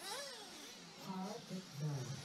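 Faint voices talking, with a brief rising-and-falling whine near the start.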